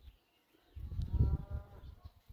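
A cow mooing once, about a second long, starting a little before the middle.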